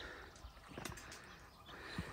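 Faint footsteps on a rocky, gravelly trail: a few scattered steps.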